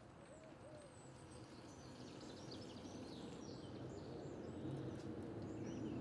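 Faint outdoor ambience with birds calling: short high chirps, and a few low hoot-like calls in the first second. Beneath them is a low noise that grows gradually louder.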